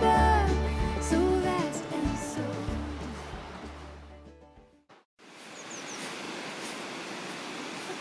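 A song with sustained tones fades out over the first four and a half seconds into a moment of silence. Then a steady outdoor rush like a nearby stream comes in, with a couple of brief high chirps just after it starts.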